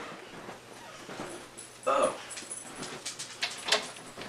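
A dog whimpering, with a few sharp clicks in the last second.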